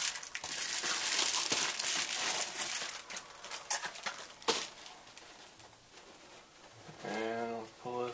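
Bubble-wrap plastic packaging crinkling and rustling as a camera body is unwrapped by hand, dense for about the first three seconds, then a few separate clicks before it goes quiet.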